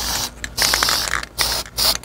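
Aerosol spray paint can hissing in about four short bursts as a light dusting coat is sprayed on.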